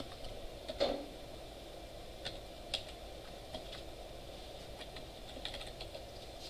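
Computer keyboard keys clicking faintly in scattered, irregular keystrokes as a short line of code is typed.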